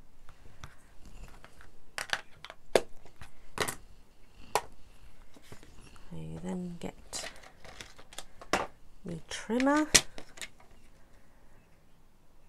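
A string of sharp plastic clicks and knocks with light paper rustling as stamping supplies (an ink pad and a clear acrylic stamp block) are handled and cleared away and a paper trimmer is set down on the work mat. A woman's brief voice comes in twice in the second half.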